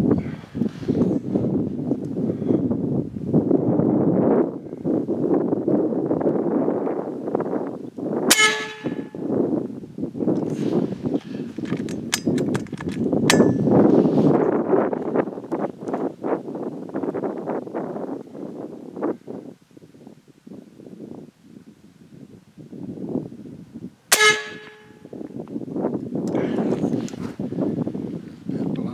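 Gusty wind buffeting the microphone, with two shots from a .357 American Air Arms Slayer big-bore air rifle, each a sharp crack with a short metallic ring, about 16 seconds apart. A few light metallic clicks come about four to five seconds after the first shot.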